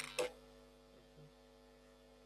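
Steady electrical hum, with two brief sharp sounds about a quarter second apart right at the start and a faint blip a little after a second in.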